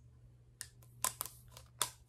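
Rubber band being stretched and wrapped around a ruler and a round salt container, giving four short sharp clicks and snaps as the band and parts knock together.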